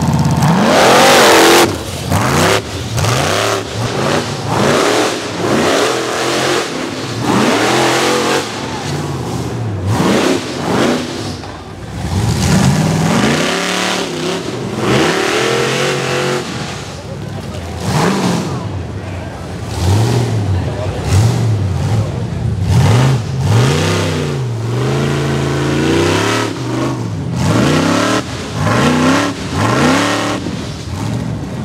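Rock bouncer buggy's engine revving hard in repeated bursts, its pitch climbing and dropping with each stab of throttle, loudest in the first second or two. Its tires spin in dirt and rock as it claws up the hill climb.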